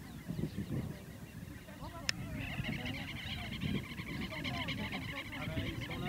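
Upland geese calling: a rapid run of high, repeated notes starts about two and a half seconds in and carries on to the end, over a low rumbling background, with a single sharp click just before the calls begin.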